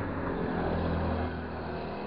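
A motor engine's low, steady hum that grows louder about half a second in and eases off again after a second or so.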